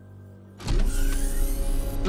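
A motorized mechanism whirring, starting suddenly about half a second in and holding loud to the end, like a powered sliding mechanism in a cartoon sound effect, over low music.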